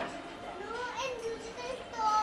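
A young boy talking in a high voice.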